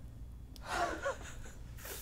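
A man's short wordless exasperated vocal outburst, a gasp-like groan with a wavering pitch, followed by a quick breath near the end.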